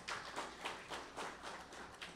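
Faint, sparse applause from a few people in the audience: scattered hand claps, about four or five a second.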